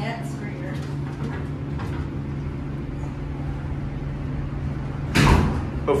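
Otis hydraulic elevator's doors sliding shut, ending in a loud bump about five seconds in, over a steady low hum.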